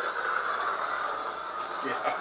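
A man imitating the noise of rolling luggage wheels with his mouth: a steady hissing rush that stops near the end.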